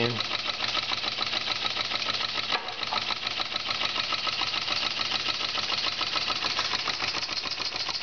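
Large model steam engine (7/8 inch bore, 1½ inch stroke) running fast and smoothly with no governor, a rapid, even beat from the engine and the small generator it drives. The electric boiler is at about 11 psi and still gaining pressure while the engine runs.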